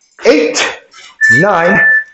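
A man's voice counting out moves aloud, with a thin, steady high tone starting a little past the middle and running on past the end.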